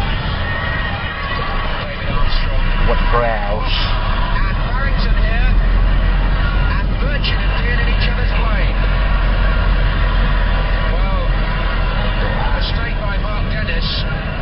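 Car driving along a road, heard from inside the cabin: a steady low rumble of engine and road noise.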